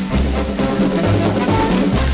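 Instrumental passage of a cha-cha by a Latin dance orchestra, played from a 78 rpm record, with drums and bass to the fore and no vocal.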